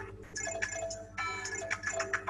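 Quizizz live-game background music playing from the host's computer: a light tune of short, quick notes with high, bright overtones.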